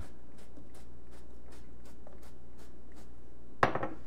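Seasoning from a glass jar being worked over a pot of smashed potatoes: light ticking about four times a second over a steady low hum, with one sharp knock near the end.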